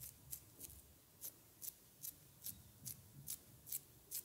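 Fingers pinching and lifting off honey-coated facial skin in a face massage, making short crisp clicks in a steady rhythm, about two or three a second.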